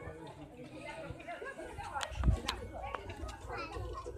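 Faint background chatter of several people's voices, with two sharp clicks and a low thud a little over halfway through.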